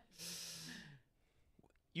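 A person's short, breathy exhale close to a microphone, lasting just under a second, with a faint hum of voice under it.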